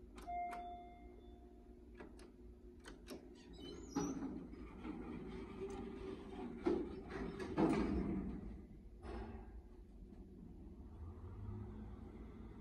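Traction elevator in operation: a single chime rings for about a second just after a floor button is pressed, followed by several clicks. The car doors then slide shut with a rumble and a few knocks, and a low hum builds near the end as the car starts to travel.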